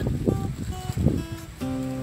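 Music led by an acoustic guitar, with plucked and strummed notes.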